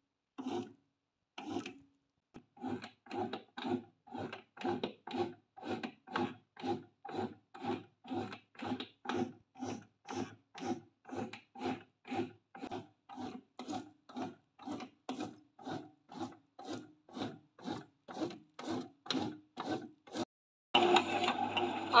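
SilverCrest SBB 850 D1 bread maker kneading dough: its motor and kneading paddles run in short, regular pulses, about two a second, mixing flour and water into a dough ball.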